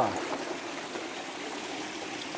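Small rocky stream running over and between granite boulders: a steady, even rush of water.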